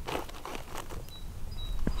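Clear plastic sheeting rustling and crinkling in short irregular bursts as it is smoothed and pressed down by hand over a garden bed.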